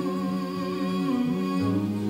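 Live acoustic music: a woman's voice holding a long, wordless, slightly wavering note over acoustic guitar and double bass, with a low bass note coming in about one and a half seconds in.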